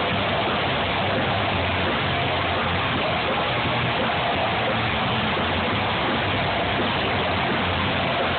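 A live band playing loud, with electric guitars and bass. The sound is a dense, steady wash with no breaks, and low bass notes change every second or so.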